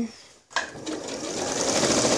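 A Janome electronic sewing machine starts about half a second in, picks up speed over about a second, and then runs at a steady fast stitch.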